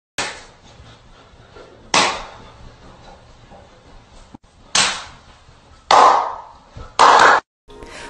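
A series of five sharp hits or bangs, unevenly spaced, each dying away within about half a second.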